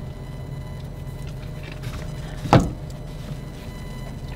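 Steady low hum inside a car cabin, typical of an idling engine or running ventilation, with one sharp knock about two and a half seconds in.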